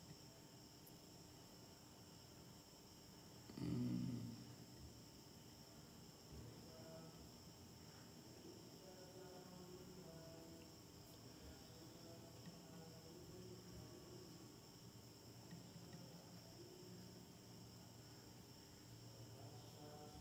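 Near silence: room tone with a faint steady high whine, broken by one brief bump about four seconds in.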